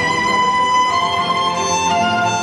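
Ballroom dance music played over the hall, carried by a violin with long held notes over a string accompaniment.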